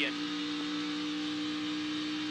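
NASCAR Xfinity stock car's V8 engine running at a steady, unchanging pitch, heard through the in-car camera's microphone over a haze of wind and road noise.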